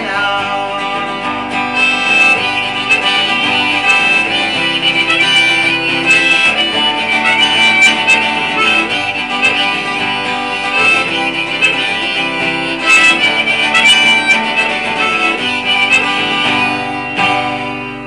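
Harmonica played over a strummed acoustic guitar: a folk instrumental break with sustained, wavering harmonica notes above the chords, getting quieter near the end.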